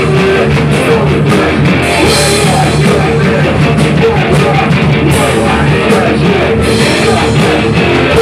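Hardcore punk band playing live and loud: electric guitar over a drum kit with frequent cymbal hits, without a break.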